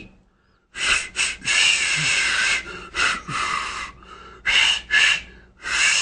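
A person blowing air through pursed lips in a series of breathy, toneless bursts, trying to whistle and failing to produce a note.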